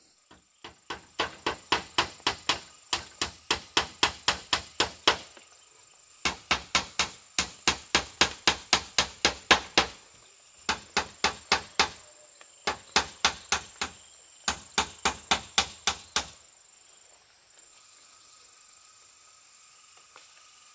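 A hammer driving nails into bamboo wall slats: five quick runs of sharp blows, about three or four a second, with short pauses between runs. A steady high insect drone runs underneath.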